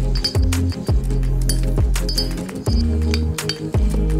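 A clear glass incandescent light bulb tapped repeatedly with a thin metal rod: light glassy clinks, several with a short high ring. Under them runs music with deep bass notes and kick drum.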